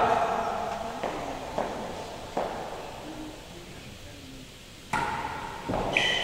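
A few faint, separate knocks echoing around the indoor real tennis court, then a sharper knock about five seconds in.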